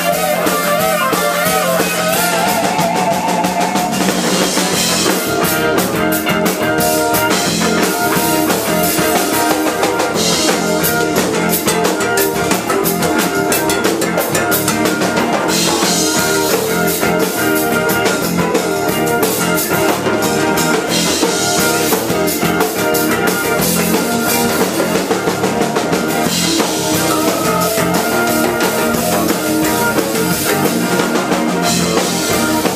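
Live Cajun-zydeco rock band playing an instrumental stretch, electric guitar in the lead over drum kit and bass.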